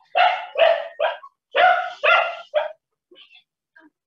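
A dog barking in two quick runs of about three barks each over the first three seconds.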